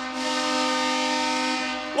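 Arena goal horn sounding one long, steady chord, signalling a home-team goal.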